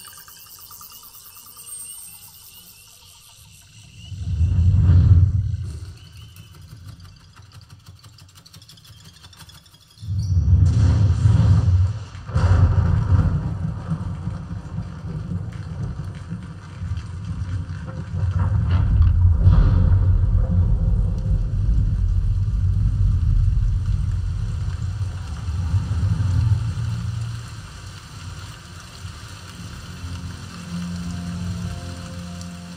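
A Dolby Atmos demo trailer played through a DENON DHT-S218 soundbar and a Polk Audio MXT12 subwoofer, picked up by a microphone in the room. The sound is mostly deep bass rumble: a short swell about four seconds in, then heavy rumbling from about ten seconds on.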